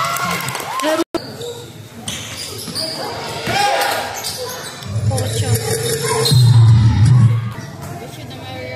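Basketball game court sound: a ball bouncing on the concrete court, with players' and onlookers' voices and shouts, loudest in the second half. The sound cuts out completely for a moment a little after one second in.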